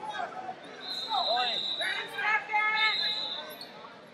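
Indistinct calling and shouting voices in a large, echoing hall, loudest in the second half, with a thin steady high tone sounding for about two and a half seconds.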